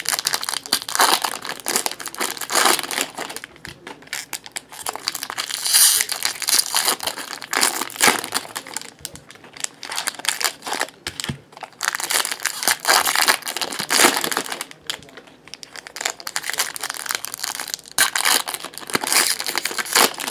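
Foil wrappers of Topps Chrome Jumbo baseball card packs crinkling in irregular bursts as the packs are handled and opened.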